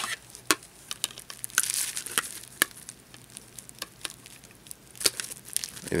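Plastic packaging crinkling in short, scattered bursts, with light clicks of small plastic pieces being handled as the parts of a boxed figure are unwrapped.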